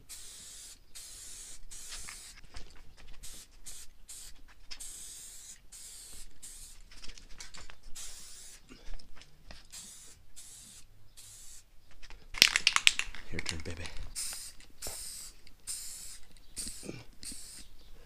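Aerosol spray-paint can hissing in many short bursts with brief pauses between them, as a coat of gold paint goes on. A louder, fuller stretch of noise comes about two-thirds of the way through.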